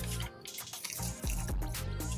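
Background music with steady sustained tones, over close, wet mouth sounds and short clicks of someone chewing and biting into fried food.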